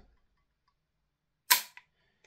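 Near silence, then a single sharp metallic click about one and a half seconds in, with a faint tick just after, from the parts of a gas blowback airsoft MP5K being handled.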